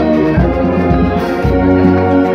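Brass marching band with euphoniums and tubas playing held chords over a low bass line that steps from note to note.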